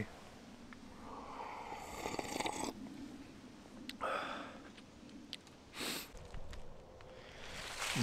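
A man sipping hot coffee from a mug with a drawn-out slurp, then breathing out and sniffing in short, separate breaths.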